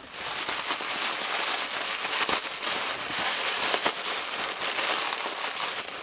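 Clear plastic packaging crinkling as it is handled and pulled open, a steady run of small irregular crackles.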